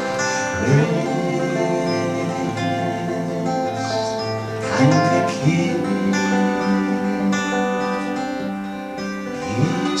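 Acoustic folk band playing an instrumental passage live: strummed acoustic guitar under held melody notes and a moving bass line.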